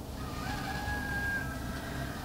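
A rooster crowing once: one long call held at a steady pitch, quiet under the room's background hum.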